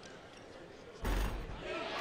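Arena crowd cheering that breaks out suddenly about a second in as a free throw drops through the basket, then eases off.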